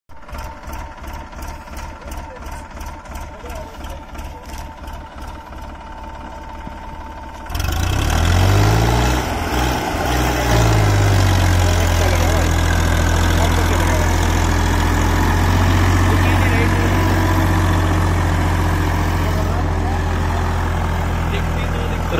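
Massey Ferguson 245 tractor's three-cylinder diesel engine pulling a heavily loaded sugarcane trolley. It starts as an even, slow chugging. About seven seconds in it turns suddenly much louder, revs up and down a few times, then settles into a steady, hard-working drone under the load.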